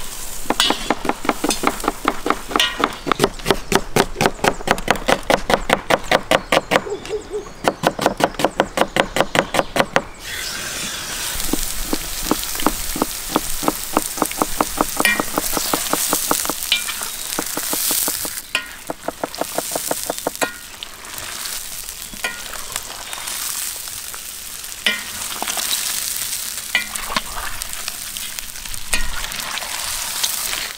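Halved quail sizzling in hot oil and butter in a cast-iron kazan, stirred with a metal spatula. For roughly the first ten seconds a fast, even run of strokes, several a second, sounds over the frying; after that the sizzle continues with scattered clicks of the spatula against the pot.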